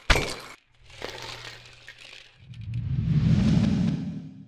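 Cartoon sound effects: a glass jar knocking over with two sharp cracks at the start, then sugar cubes clattering as they scatter across the floor. A louder, low rushing swell builds over the second half.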